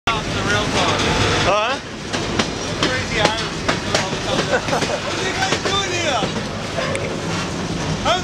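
Passenger train running on its track, heard from inside the car: a steady running noise with scattered clicks from the wheels. The noise is louder for the first second and a half, then drops a little, with indistinct voices of riders over it.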